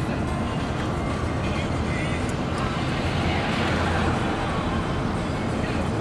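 Steady low rumble of a car's engine and tyres at road speed, heard inside the cabin.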